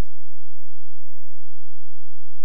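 A steady electronic tone at one even pitch with a low hum beneath, unchanging throughout, from the microphone and sound system while no one speaks.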